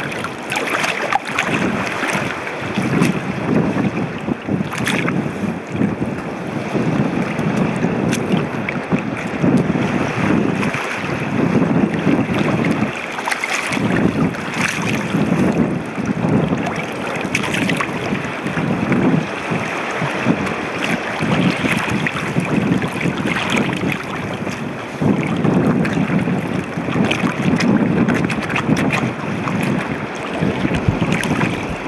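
Shallow seawater sloshing and splashing around feet in leather sneakers as they tread in it, in swells about every one to two seconds, with wind rumbling on the microphone.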